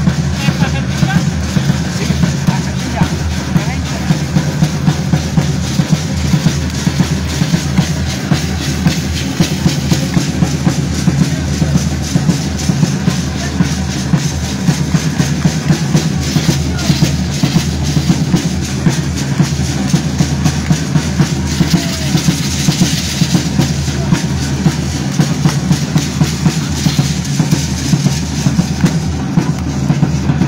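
Drummers beating a steady, quick rhythm on a bass drum and a strapped side drum to accompany a traditional Mexican danza.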